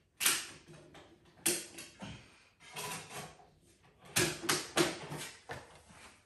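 A series of sharp plastic clicks and knocks from a DVD case and disc being handled to load the next disc into a Blu-ray player, coming more quickly between four and five and a half seconds in.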